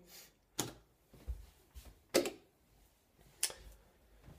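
Footsteps on a wooden floor: a handful of separate knocks, unevenly spaced.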